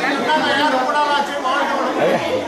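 Many people talking at once in a crowded indoor hall: the chatter of a seated crowd, with the hall's echo.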